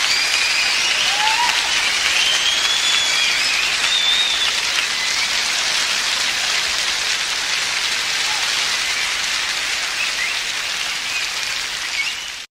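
Concert audience applauding steadily after a song ends, with a few whistles over the clapping.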